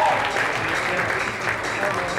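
Audience applauding, with voices mixed in.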